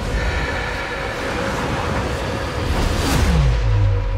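Film-trailer sound design over music: a dense noisy swell that peaks about three seconds in, then a tone falling in pitch into a deep sustained bass drone.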